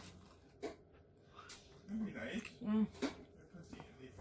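Quiet room, then a couple of short murmured voice sounds about halfway through, with a few light clicks.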